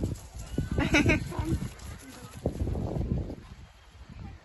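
A pony whinnying: one short, wavering call about a second in, over low thumping and rumble.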